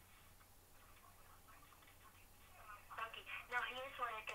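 Near silence for nearly three seconds, then a faint, thin voice starts speaking over a telephone line: the agent on the other end of the call, heard through the phone.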